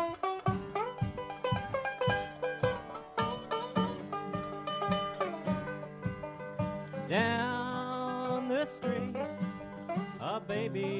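Five-string banjo picking quick runs of notes over acoustic guitar: the instrumental opening of a bluegrass song.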